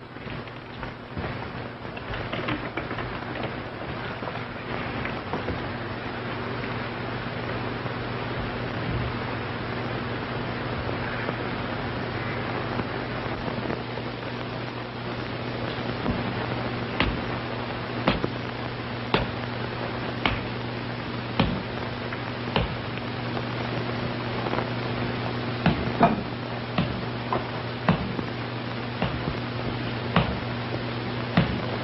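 Steady rain-like hiss over a low, even hum. Sharp crackles and pops come in from about halfway through and grow more frequent.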